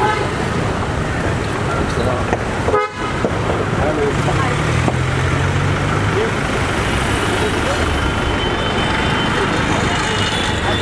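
Busy street traffic with car horns tooting and people talking nearby.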